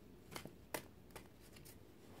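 Tarot cards being handled: a few faint, short snaps and flicks of card stock as cards are drawn from the deck.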